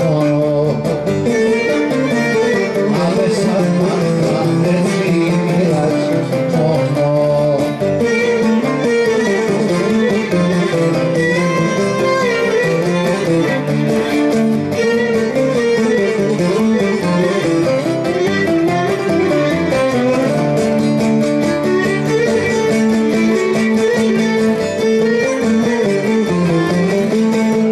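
Live Cretan folk music played by a string ensemble: plucked lutes carry a steady rhythm under a bowed string melody.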